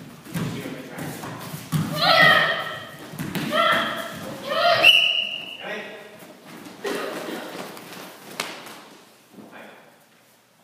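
Karate sparring: bare feet thudding on foam mats, with three loud, high-pitched shouted kiai in the middle, a little over a second apart, as the fighters attack.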